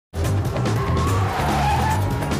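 Animated action-film soundtrack: loud music over car sound effects, with a tyre screech in the middle.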